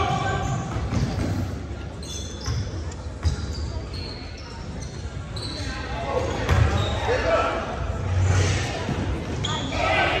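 Basketball game sounds in a large, echoing gym: a basketball bouncing on the hardwood floor among shouting voices of players and spectators.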